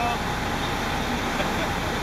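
Fire truck engine idling with a steady rumble, heard from inside the cab, with the siren now off.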